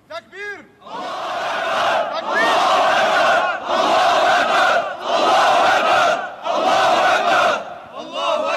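A large group of men chanting in unison: about five loud shouted chants of roughly a second each, in quick succession. This is the battle cry closing a Syrian armed group's recorded formation announcement.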